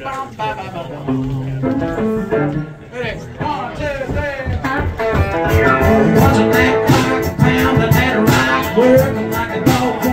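Telecaster-style electric guitar playing the intro of a country song live, picked single notes at first, then fuller, louder strumming with sharp pick attacks from about five seconds in.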